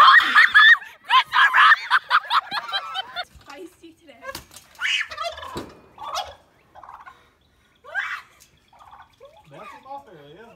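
Loud, rapid fowl calls for the first three seconds, then a turkey gobbling in several separate short bursts.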